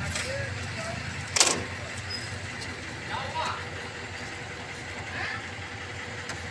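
A single sharp clack about one and a half seconds in, over a low steady hum and faint voices.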